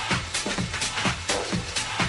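Techno music: a steady four-on-the-floor kick drum, each kick falling in pitch, at about two beats a second, with hi-hats ticking between the kicks.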